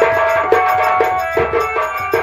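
Live folk stage music: drums beating a steady rhythm of about two strokes a second under held melody notes.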